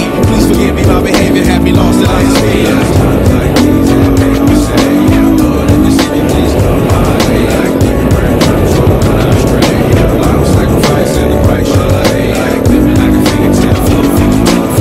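Dirt bike engine revving, its pitch rising and falling in repeated swells as the rider works the throttle and gears, under music with a steady beat.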